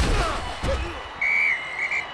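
End-card sound effects: a heavy thud at the start and another just under a second in, then a high whistle blast and a second short blast near the end.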